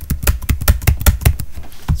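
Computer keyboard keys clicking rapidly, about eight strokes a second, as a word is typed into a browser's search box.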